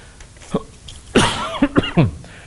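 A man coughing into a close headset microphone: a sudden loud cough about a second in with a rough voiced tail, and another near the end.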